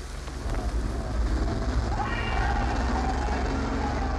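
A heavy vehicle engine, the chasing bus, rumbling low and loud; it swells about half a second in and then keeps going steadily.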